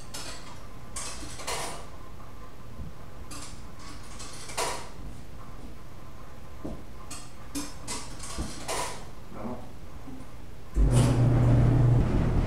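Scattered light clicks and rustles over a faint low hum, then about eleven seconds in a coin-operated clothes dryer starts up and runs with a loud, steady low hum.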